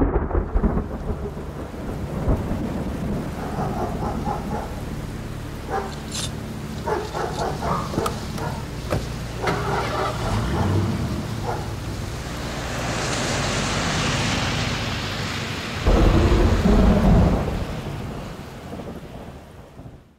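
Rain with rolling thunder: a steady wash of rain and rumble, a swell of hiss, then a loud low crash of thunder about sixteen seconds in, fading out at the end.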